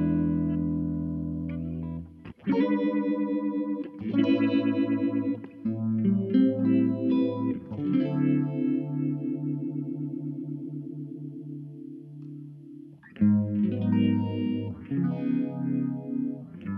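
1978 Gretsch 7680 Atkins Super Axe electric guitar played through a Fender Vibroverb valve amp. A chord rings and breaks off about two seconds in. Strummed chords and picked notes follow, then a long chord from about eight seconds that pulses quickly and fades, and a loud new chord about thirteen seconds in.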